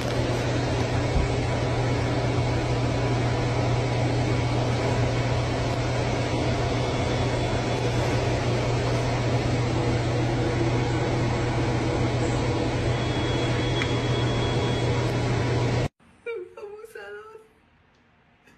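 Steady loud hiss with a low hum, cutting off abruptly about sixteen seconds in; a brief faint voice follows.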